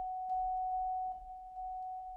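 Vibraphone struck softly with yarn mallets, one ringing mid-high note repeated four times, each stroke sustaining into the next.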